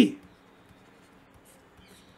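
Faint scratching of a pen stylus writing a word on a drawing tablet, a few short strokes.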